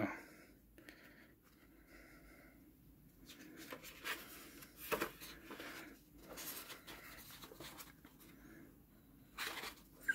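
Faint rustling of a photobook's matte paper pages being turned and handled, with a sharper paper crackle about five seconds in and another rustle near the end.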